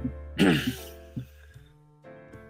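A person clearing their throat once, briefly and loudly, about half a second in, over quiet background music.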